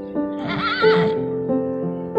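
A horse whinnies once: a short call with a wavering pitch, about half a second in. Gentle piano music plays underneath.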